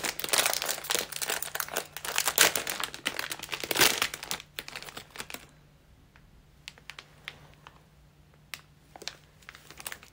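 Crinkling of a small wrapped Tirol Choco chocolate's wrapper being handled close to the microphone, dense for about the first four seconds, then dropping to a few faint crinkles.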